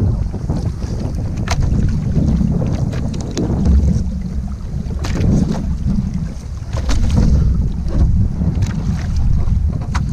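Sea water sloshing and splashing against an action camera at the surface as a swimmer does breaststroke, with a heavy low rumble of wind and water buffeting the microphone. Sharp splashes come every second or two, in time with the strokes.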